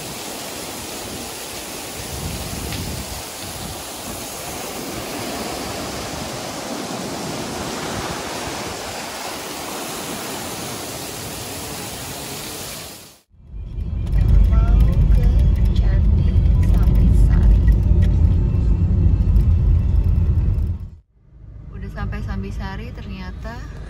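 Waterfall spilling onto rocks beside breaking surf, an even rushing noise. After a sudden cut about thirteen seconds in, a much louder low rumble takes over for about seven seconds, then stops abruptly.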